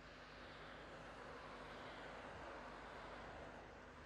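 Faint steady rushing of wind and road noise from the vehicle carrying the camera as it drives along the road, swelling a little in the middle.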